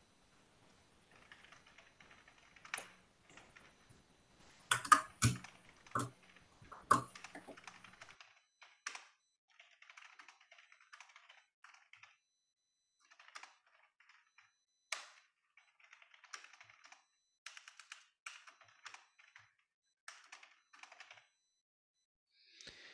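Typing on a computer keyboard in short runs of keystrokes with pauses between them, with a few louder knocks about five to seven seconds in.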